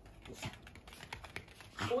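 A Maltese's claws clicking and scrabbling on a hard tiled floor as it tugs at a large plush toy, a quick uneven patter of small ticks with a few louder scrapes. A woman's voice starts right at the end.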